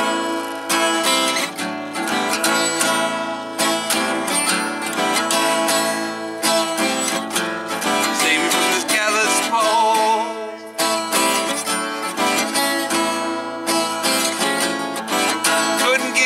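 Acoustic guitar strummed in a steady rhythm, an instrumental break between verses of a folk song.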